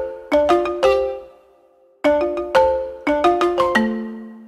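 Background music: a light melody of short, bell-like struck notes that ring and fade, in two quick phrases with a brief pause about halfway through.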